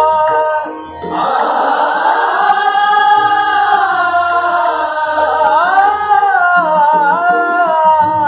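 Hindustani classical vocal music in Raga Kedar: students sing a line of the composition back together, with long held notes and gliding pitch, over tabla accompaniment. There is a brief drop in the singing about a second in before the voices come back in fuller.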